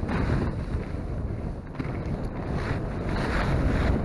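Wind buffeting a small camera's microphone on an open ski slope, a steady low noise that flutters unevenly.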